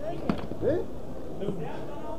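People's voices: overlapping talk and short pitched calls, with a few light clicks of handled objects.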